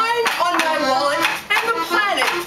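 A group of voices singing together with hand clapping along in rhythm.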